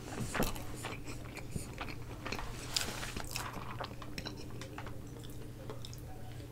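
Close-miked chewing of a mouthful of food, with irregular short clicks and crackles from the mouth, over a steady low hum.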